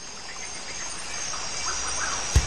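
Outdoor nature ambience fading in, with faint short bird chirps over a steady hiss, growing louder throughout.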